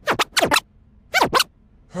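DJ record scratching: six quick back-and-forth scratch strokes in three pairs, the last pair about a second in.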